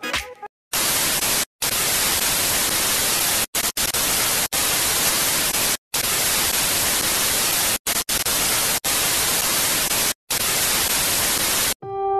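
Television static hiss, a no-signal sound effect, broken by several short silent dropouts. It starts about a second in and cuts off just before the end.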